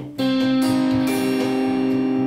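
Clean electric guitar (Fender Stratocaster) picking a C minor triad in root position on the G, B and high E strings, one note at a time about half a second apart, starting a moment in; the three notes are left ringing together.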